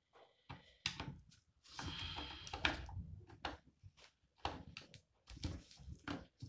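Scattered clicks and knocks of hands working an airsoft rifle's sight loose from its rail.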